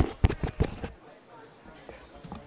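A quick clatter of five or six sharp knocks in the first second, then quieter, with voices in the background.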